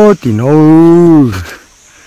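Two long, very loud hollering calls from a man's voice: the first steady and higher, ending just after the start; the second lower, held for about a second, then dropping in pitch as it ends.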